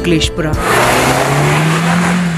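A car driving past on a wet road: tyre hiss and spray off the wet surface with a low engine hum that rises slightly in pitch, starting about half a second in as music with singing ends.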